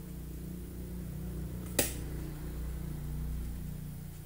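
A steady low hum with one sharp click a little under two seconds in.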